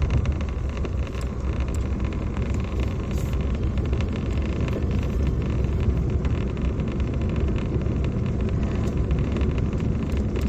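Steady low rumble of a vehicle driving along a road, continuous throughout.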